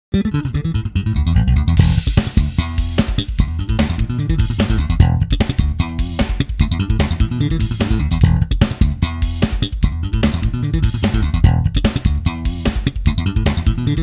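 Electric bass guitar slapped with double-thumb technique, the thumb striking down and back up through the strings. It plays a fast run of percussive, clicky notes over a full low end, running through pentatonic patterns.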